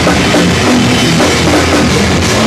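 A live rock band playing loudly: distorted electric guitars over a drum kit with bass drum and cymbals.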